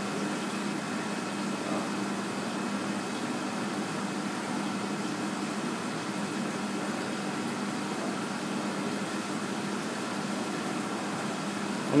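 Steady hum of running aquarium equipment, such as pumps and filtration, with a few constant tones over an even hiss.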